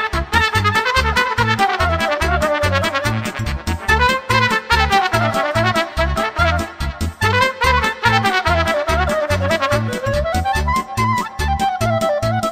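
Moldovan folk dance music led by a trumpet playing a fast melody of quick notes that rises and falls, over a steady bass-and-drum beat.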